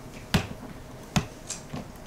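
Two sharp clicks about a second apart, followed by a few fainter ticks, as from a tap or handling noise in a quiet room.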